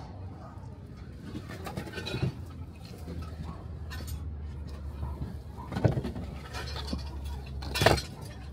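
Handling noise from a vintage Bell & Howell movie camera being picked up and turned over, with a few sharp knocks; the loudest comes near the end, when it goes back down on the table. A steady low rumble runs underneath.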